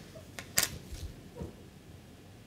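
A few light clicks and taps of plastic handling as a plastic lateral-flow test cassette is set down on a tabletop and a plastic dropper is brought to it. The sharpest click comes a little past half a second in, with softer ones around one second and one and a half seconds.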